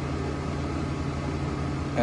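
Steady rumble and hum of a passenger train carriage's interior, an even noise without breaks.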